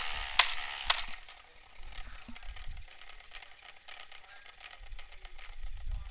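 Toy three-wheeler's wheel spinning freely after a flick by hand. There are three sharp clicks in the first second, then a faint, steady whir with many light ticks and some handling rumble.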